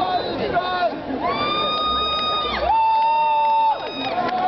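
Audience voices, then two long held whoops one after the other, each sliding up at the start. The second is lower and louder and slides down at its end.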